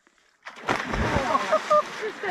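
A person jumping into a lake: a sudden splash about half a second in, with a deep thud as the body hits the water, followed by onlookers shouting.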